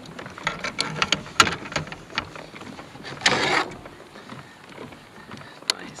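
Fishing reel and rod handling: a quick run of ratcheting clicks and small knocks as the trolling line is let back out, then a short rush of noise about three seconds in.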